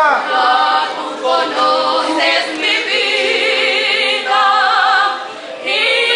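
Two women singing a hymn duet unaccompanied, their voices wavering with vibrato, with a brief breath between phrases about five and a half seconds in.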